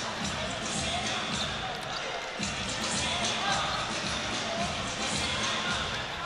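Basketball arena ambience: a steady crowd murmur with faint music under it.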